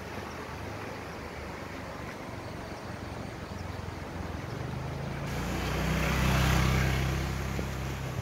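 A motor scooter's engine passing: a low hum that grows louder from about halfway through, is loudest a little before the end, then fades away.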